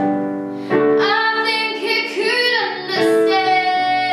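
A girl singing a slow pop ballad solo over a piano backing, with short sung phrases and then a long held note from about three seconds in.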